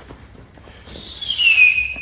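A loud, high whistle gliding down in pitch, starting about a second in and levelling off near the end, with a hiss above it.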